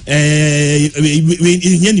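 A man's voice holds one long, steady note for nearly a second, then a few shorter held notes, more like chanting or singing than talk.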